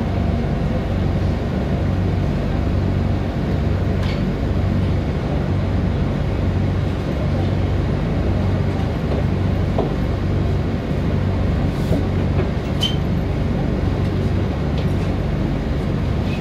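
Vallvidrera funicular car running along its track, heard from inside the cabin: a steady low rumble with a few faint high clicks.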